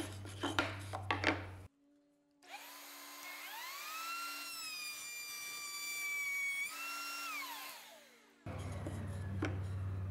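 Router in a router table spinning up with a rising whine, running steadily while a pine board is fed past the ogee moulding bit, then winding down with a falling whine after it is switched off. A few knocks of the board being handled come before it.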